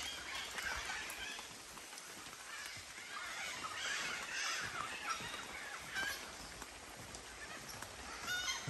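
Birds calling faintly now and then.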